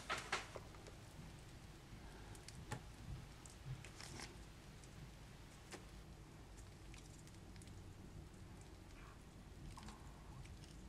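Near silence with a few faint clicks and taps over the first six seconds, from alligator-clip leads and a small LED being handled.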